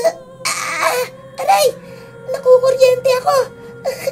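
A voice crying out in pain in a string of short, falling moans and sobs with a breathy gasp about half a second in, over a steady background drone: the dramatized patient reacting as the healer grips the swollen toe.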